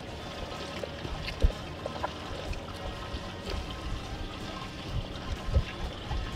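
Background music over soft wet trickling and sloshing, with a single sharp knock about a second and a half in.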